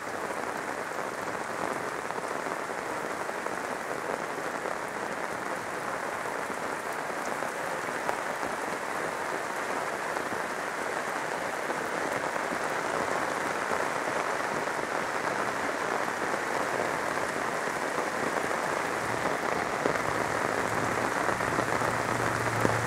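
Heavy rain pouring down in a steady, dense hiss that grows slowly louder. Near the end a low steady hum joins in.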